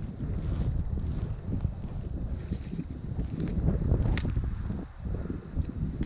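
Wind buffeting the microphone as a continuous uneven low rumble, with one brief sharp click about four seconds in.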